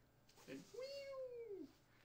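A single high, drawn-out, meow-like call lasting about a second, rising and then falling in pitch.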